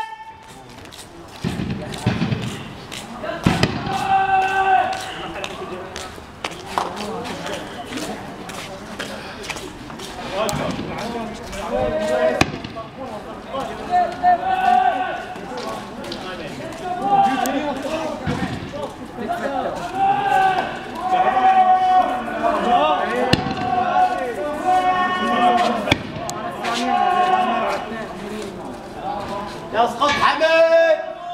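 Men's voices calling out "Allahu akbar" in long, drawn-out, overlapping cries, over and over. Scattered sharp knocks and bangs sound through the calls.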